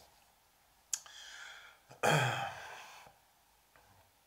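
A man's breath between sentences: a small mouth click and an intake of breath about a second in, then a louder sigh out about two seconds in that trails away.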